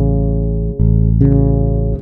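Fretless electric bass sounding an open A string together with a C# stopped on the G string, held and ringing, then plucked again a little under a second in. This is an intonation check: the open string is the in-tune reference, heard against the fingered note so the fretless C# can be judged.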